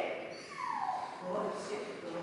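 A dog whining: a short pitched call that slides down in pitch about half a second in, followed by fainter low vocal sounds.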